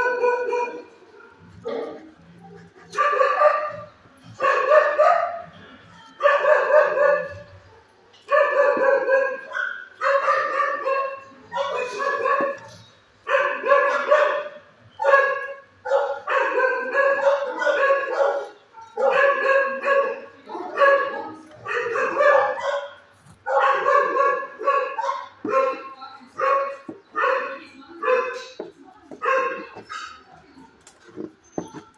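A dog barking repeatedly and insistently, with about one bark every second or so all the way through. The barks are loud, drawn-out and similar in pitch.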